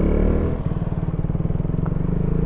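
KTM Duke 200's single-cylinder engine running steadily under way, with a rapid, even beat.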